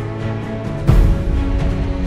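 Music with held, sustained chords and a heavy low hit about a second in.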